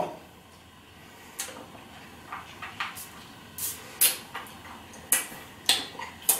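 Quiet, irregular mouth clicks and smacks from someone sucking on a sour hard-candy ball, about a dozen short ticks scattered through the seconds.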